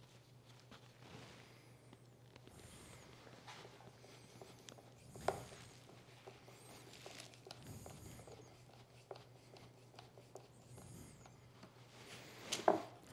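Faint sounds of a hand screwdriver turning a small brass screw into wood, with one sharp click about five seconds in, over a low steady hum.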